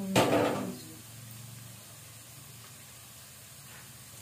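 A brief handling clatter from the plastic blender jar in the first second, fading fast. After it comes a faint, steady background sizzle from onions frying in oil in the pan.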